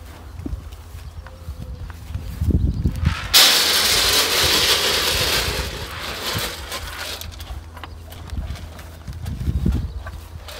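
Cattle nuts tipped from a plastic bucket into a metal feed trough: a sudden rattling hiss a few seconds in that lasts about four seconds and fades out. Low thuds come shortly before it and again near the end.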